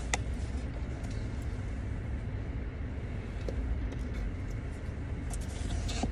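Steady low rumble of a car running, heard from inside the cabin, with a few light clicks: one at the very start, one midway and a small cluster near the end.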